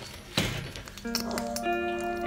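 A single clunk of a metal wire-mesh cage door being pushed shut, followed about a second later by background music with held notes.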